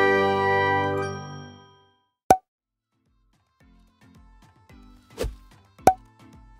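An intro sound-effect chime rings out and fades over about two seconds, followed by a single sharp click. Then quiet music with a soft, steady beat fades in, with two more clicks near the end.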